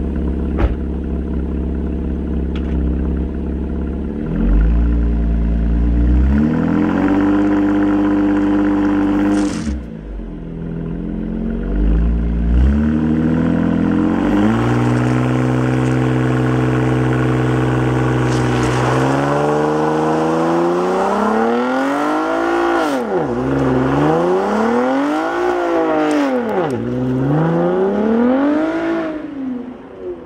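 2018 Camaro RS's V6 revving hard through a burnout in Tour mode: it rises from idle and is held high, cuts off about ten seconds in, is held high again, then rises and falls several times as the rear tyres spin, and fades as the car pulls away near the end.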